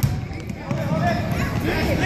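Basketball bouncing on a gym's hardwood floor, a few thumps, with children's voices and chatter around it.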